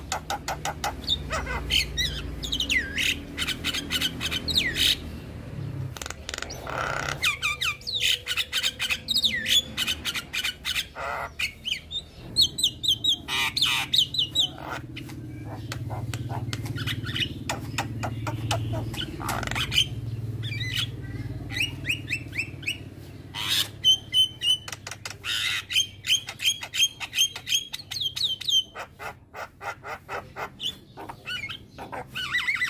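Javan myna (jalak kebo) singing a long, varied song: fast runs of sharp repeated notes and squawks broken by single clicks.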